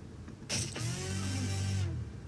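Film trailer sound design: a sudden whoosh-like hit about half a second in, then a low sustained drone with a bending tone above it that cuts off just before the trailer cuts to black.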